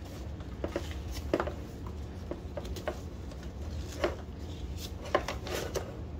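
Nylon webbing strap being pulled through a plastic pack frame and its buckle: soft rustling with scattered light clicks and knocks of the buckle and frame, about eight in all.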